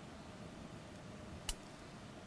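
Faint steady room hiss, with one short, sharp click about one and a half seconds in.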